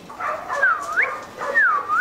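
Rottweiler puppy whining twice: two short, high-pitched cries, each dipping and then rising in pitch.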